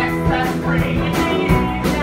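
Live pop-punk rock music with singing over guitar and a driving drum beat.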